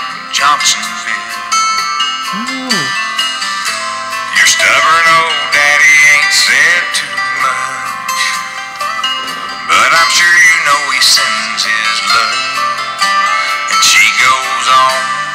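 A recorded song playing, with a man singing over guitar accompaniment.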